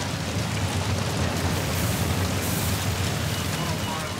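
A large fire of burning wreckage: a steady rushing noise with a low rumble underneath and brief brighter crackles of hiss about two and three seconds in.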